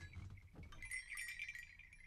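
Faint clinking and chiming of small hard objects: a cluster of light taps that ring around one high pitch, thickest about a second in and then fading.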